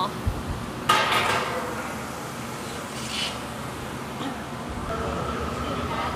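A sharp clank of metal or glass striking, with a brief ringing tail about a second in, and a smaller clink around three seconds, over the steady background noise of a glassblowing studio.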